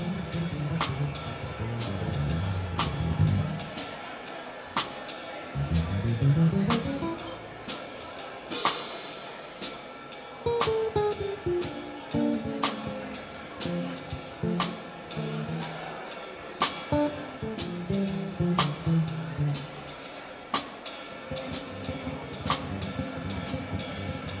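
Live jazz: bass guitar playing a melodic line of stepping notes that runs up and then back down, with a drum kit keeping time on the cymbals.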